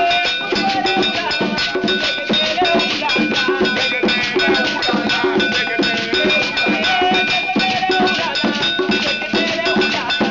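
Afro-Cuban religious drumming: a beaded gourd shekere is shaken close to the microphone in a fast, even rhythm over a ringing metal bell struck in a steady pattern, with singing voices behind.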